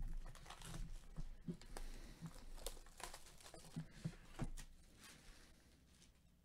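Faint crinkling and small crackles of plastic shrink wrap on a sealed sports-card box under nitrile-gloved fingers, dying away after about four and a half seconds.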